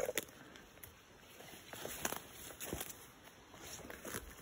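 Footsteps through forest undergrowth: faint, irregular rustles and crackles of leaves and twigs underfoot, starting about a second and a half in.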